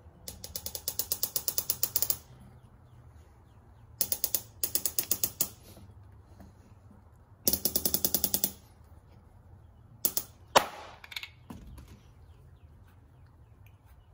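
Harbor Freight glue-tab dent puller's knob clicking rapidly as it is cranked down, about ten clicks a second in three bursts. About ten seconds in comes a sharp pop, the loudest sound, as the hot-glued pulling tab lets go of the truck's roof panel.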